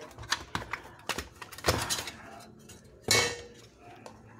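Thin sheet-metal cover of a digital TV receiver box being worked loose and lifted off by hand: a run of small metal clicks and knocks, with a louder clatter about three seconds in.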